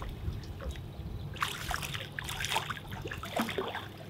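A hooked redfish splashes and thrashes at the surface beside the boat as a landing net is pushed into the water under it. Water splashes and patters, busier from about a second and a half in.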